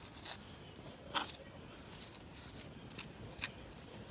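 Plastic spoon scraping and clicking in moist soil in a plastic tub. A few faint short scrapes, the sharpest about a second in.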